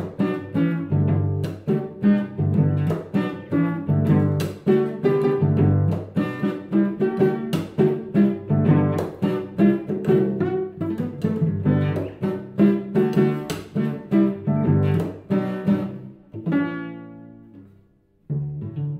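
Solo cello played pizzicato, its strings strummed and plucked like a guitar in a quick, driving rhythm of chords. Near the end a final chord rings out and fades away.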